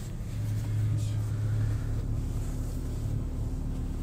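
Car engine running, heard from inside the cabin as a steady low rumble with a faint steady tone joining it about halfway through.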